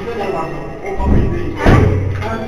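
Two deep, dull thuds, one about a second in and a second just before the end, with voices and background music around them.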